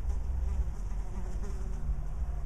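Faint wavering buzz of a flying insect over a steady low rumble.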